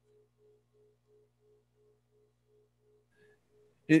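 Faint electronic beeping: short tones at one steady low pitch, about three a second, over a steady low hum, with one brief higher tone about three seconds in.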